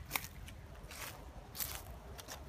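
Footsteps on dry fallen leaves and twigs over dirt, giving a few scattered, faint crackles.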